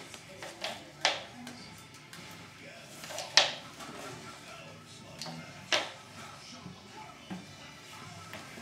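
A few sharp knocks, three loud ones about two seconds apart and some lighter ones, from a computer mouse being banged on a hard chair seat by a toddler.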